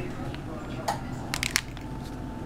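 A small ingredient packet crinkling as it is handled, with a sharp crackle a little under a second in and a quick cluster of crackles around a second and a half.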